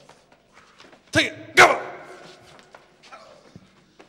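Two short, loud shouts about half a second apart, each dropping in pitch, with quieter movement noise around them.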